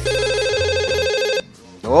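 Telephone ringing: a warbling electronic ring that lasts about a second and a half and then breaks off.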